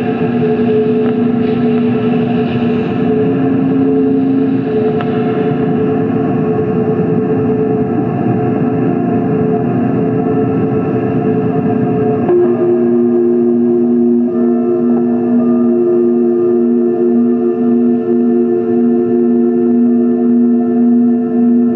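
Experimental electronic drone from a keyboard synthesizer run through a mixer and effects: several held tones stacked over a dense, distorted noise bed. About twelve seconds in the chord shifts, the noise thins and the lowest tone begins to pulse.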